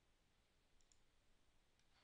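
Near silence with a few faint, short clicks, about a second in and again near the end: a computer mouse clicking through a software dialog.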